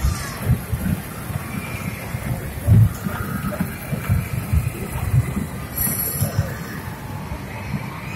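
A small kiddie ride train rolling past on its track, with low, irregular rumbling and knocking under a babble of voices.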